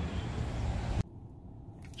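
Wind rumbling on the microphone, cut off abruptly about a second in and followed by the quiet hush of a closed car cabin.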